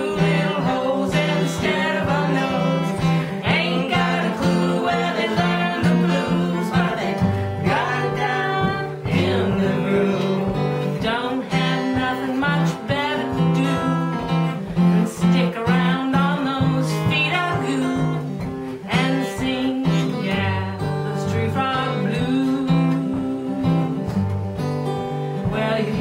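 Live acoustic blues: an acoustic guitar strummed steadily with women singing along.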